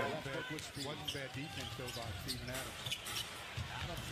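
Basketball game broadcast playing at low level: a commentator talking, with a basketball bouncing on the court during play.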